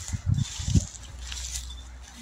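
Handling and wind noise on a hand-held phone microphone: a few low, muffled thumps in the first second, then a steady low rumble.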